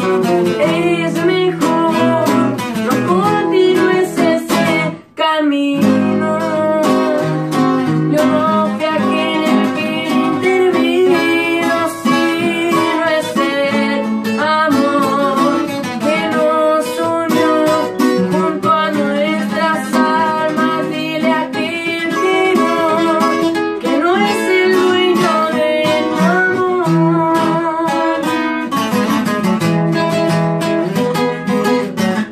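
Two acoustic guitars, a six-string and a twelve-string, playing together: quick picked melody runs over chords. There is a momentary break about five seconds in.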